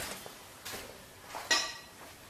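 Metal parts clinking as a Brembo brake caliper is picked up. A faint knock comes first, then a sharper metallic clank with a brief ring about one and a half seconds in.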